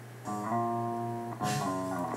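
Short electric bass phrase with a chorus effect, a part doubled in the mix, played back: a held note starting just after the beginning, then a change to new notes about a second and a half in.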